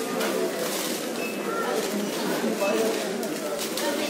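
Indistinct chatter of several voices in a busy shop, with steady background bustle and no single clear word or event standing out.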